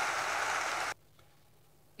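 Audience applause, an even crackling hiss that cuts off abruptly about halfway through, leaving dead silence.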